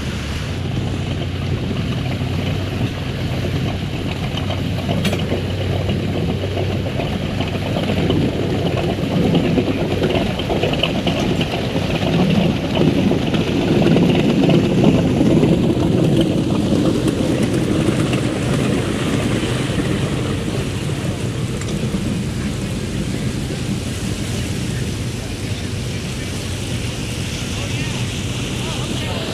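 Inboard MerCruiser 7.4 V8 of a Sea Ray Sundancer cruiser running steadily under way, a low even drone mixed with water wash and wind. The drone grows louder for several seconds midway.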